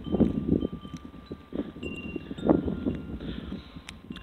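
Footsteps crunching through deep snow, a few irregular steps each second, with a few faint, thin ringing tones.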